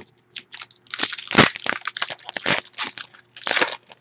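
Foil wrapper of a 2012 Upper Deck SPx football card pack being torn open and crinkled by hand: a few light crackles, then about three seconds of dense, irregular crinkling.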